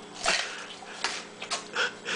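A person biting and chewing a raw onion: a few sharp, wet crunches spaced irregularly over the two seconds.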